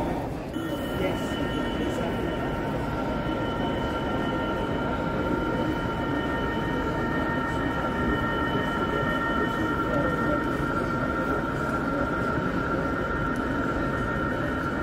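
A model Class 66 diesel locomotive running slowly along a model railway layout, its sound unit giving a steady engine note with a whine, over the chatter of a crowded exhibition hall.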